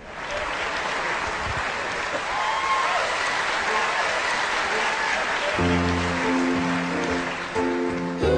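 Audience applauding and cheering. About five and a half seconds in, the sustained chords of a backing track start under the applause as the song's introduction.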